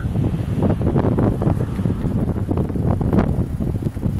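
Wind buffeting the microphone: a loud, unsteady low rumble that swells and dips in gusts.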